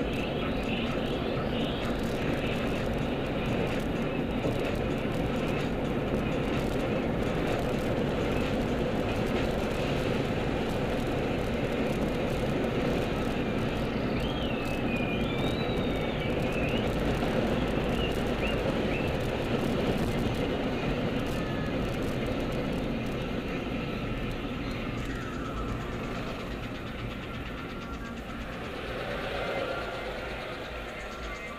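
Steady road and engine noise heard inside a moving car's cabin, easing off over the last few seconds as the car slows.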